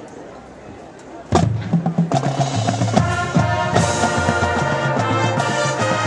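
A high school marching band opens its show: after about a second of quiet crowd chatter, a sudden loud hit of drums and low brass, then the brass section plays held chords over the percussion.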